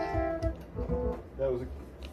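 Synthesizer keyboard holding a sustained note that carries on while the synth sound is switched, then fading out about half a second in.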